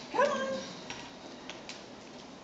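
A setter puppy gives one short whining yelp that rises sharply and then holds level, followed by a few faint ticks.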